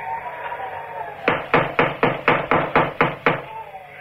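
A radio-drama sound effect of a fist knocking on a wooden cabin door: a quick run of about ten knocks over two seconds, starting about a second in. Behind it runs a faint wavering whistling tone.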